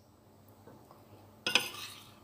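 Quiet for about a second and a half, then a metal spoon clinks and scrapes briefly against a ceramic plate.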